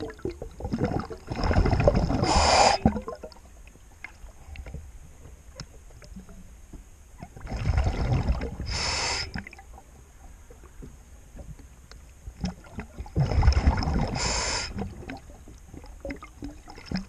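A diver breathing through a scuba regulator underwater: three long bursts of exhaled bubbles, about six seconds apart, with quieter bubbling and crackle between.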